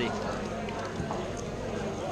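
Quick, irregular plastic clicks and clacks of a Pyraminx puzzle being turned at speed during a timed solve.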